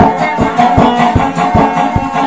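Instrumental dayunday music: a plucked guitar melody over a steady low beat, a little under three beats a second, with no singing.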